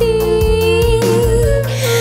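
Kannada film song: a long held vocal note, nearly level in pitch, over bass and a steady beat, with a cymbal-like swell near the end.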